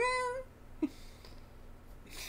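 A man's laughter ending in a drawn-out, high-pitched squeal lasting about half a second.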